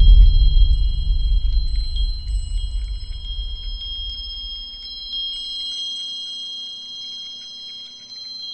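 Logo-reveal sound effect: a deep low boom that fades away over about five seconds, under a shimmer of high, ringing chime tones that come in one after another and hang on.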